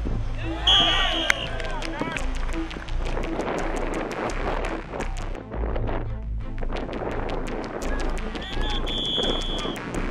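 Field sound of a football game: players and coaches shouting, with scattered knocks and claps. A whistle blows briefly about a second in and again, longer, near the end.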